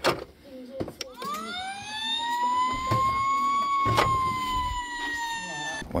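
Toy fire truck's electronic siren. A few plastic clicks from its buttons come first, then one long siren wail rises about a second in, holds, and sinks slowly until it cuts off near the end.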